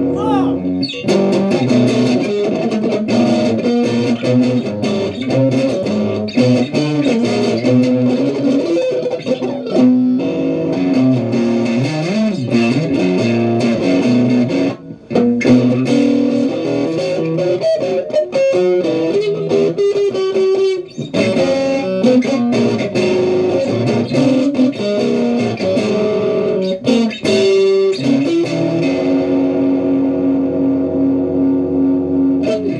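Electric guitar being played, a continuous run of picked notes and chords, breaking off briefly about halfway through and again near 21 seconds.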